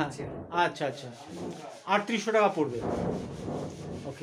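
Scratchy rubbing, as of sanding on wood, with men's voices talking over it.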